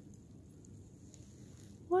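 Near silence: faint outdoor hiss with a few soft ticks, then a woman's voice begins right at the end.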